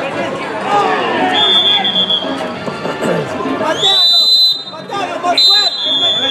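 Referee's whistle blown three times over the shouts of players and spectators: one short blast, then two longer ones. They are the final whistle ending the match.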